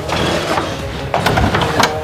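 A few sharp clicks and knocks, about a second in and again near the end, over faint background music.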